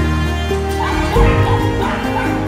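Background music, with short, repeated yips from two young dogs play-fighting in the second half.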